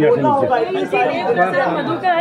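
Several men's voices talking over one another: reporters in a press scrum calling out questions in Hindi.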